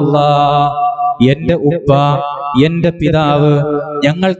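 A man's voice chanting melodically into a microphone, holding long drawn-out notes with a slight waver, in short phrases.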